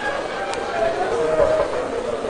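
Indistinct talking, with a single short click about half a second in.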